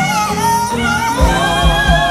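Live R&B band with singing: sustained, wavering vocal lines over horns, with a low drum beat coming in a little past a second in.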